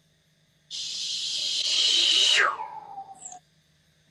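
A woman's long breath blown out hard through pursed lips. It is a loud hiss for about two seconds, then falls in pitch into a breathy, whistling tone that trails off.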